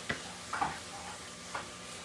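Kitchen knife cutting an onion on a wooden cutting board: two sharp taps of the blade on the board about a second and a half apart, over a faint steady hiss.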